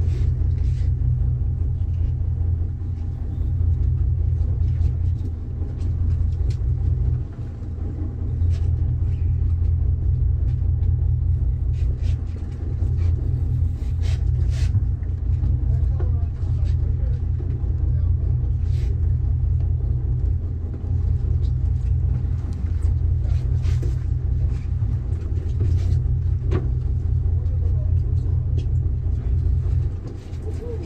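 Boat engine running steadily, a deep low rumble, with scattered light clicks and knocks over it.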